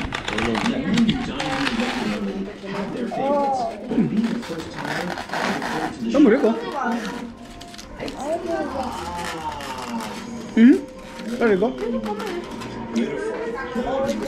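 Indistinct voices talking over background music playing in a small room.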